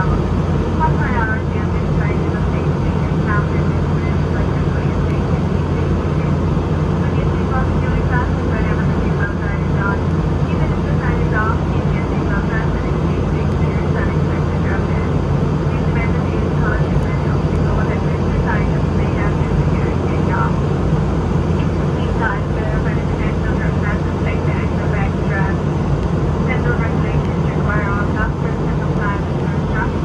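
Steady cabin drone of a Boeing 717-200 in flight: its rear-mounted Rolls-Royce BR715 turbofans and the air rushing past, with indistinct passenger chatter underneath.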